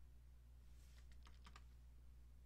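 Near silence with a steady low electrical hum, and a quick run of four or five faint computer keyboard clicks about a second in.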